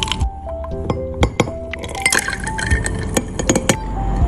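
Soft background music with a melody of held notes, over sharp, scattered clinks of a stirrer knocking against a drinking glass as a drink is stirred.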